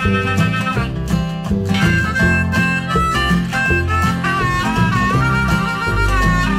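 Harmonica taking a solo of held and bent notes over acoustic guitar and bass, an instrumental break in a song.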